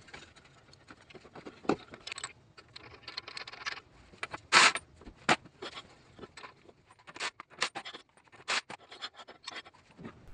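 Scattered metal clicks and scrapes of hands working at a car's front wheel hub, fitting the castle nut onto the drive axle's end. The sharpest click comes about halfway, with several more in the second half.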